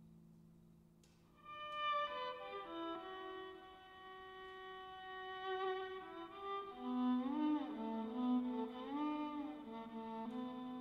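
Violin playing slow, long bowed notes, entering about a second and a half in after a low held tone fades away. From about the middle a second, lower line joins, its notes sliding up and down in pitch under the held upper notes.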